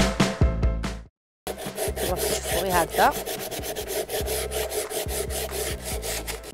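Theme music cuts off about a second in. After a short gap, an old wooden tray is sanded by hand with sandpaper: quick back-and-forth rasping strokes, several a second, with one brief rising squeak about three seconds in.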